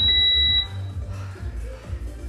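A single high electronic beep from a gym interval timer, lasting about half a second at the start. It sounds over background music with a heavy bass beat.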